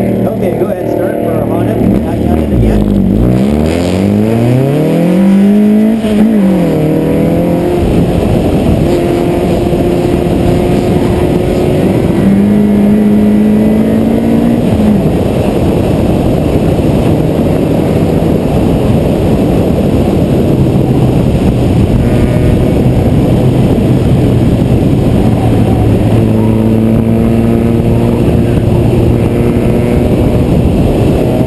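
A car's engine being driven hard on a track, its note dropping and climbing again as the driver comes off the throttle and accelerates, with a quick fall in pitch like an upshift about six seconds in, then holding fairly steady revs. Heavy wind rush on the outside-mounted camera runs under it.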